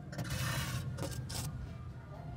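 A 360 camera on a stick scraping and rubbing against the sheet-metal walls of a gas furnace heat exchanger as it is drawn out, in a few rough scrapes with light knocks over the first second and a half.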